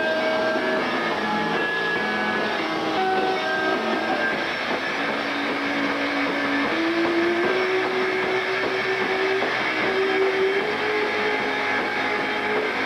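Live rock band playing loud: heavily distorted electric guitar holding long notes that step upward in pitch in the second half, over a dense wash of drums and cymbals.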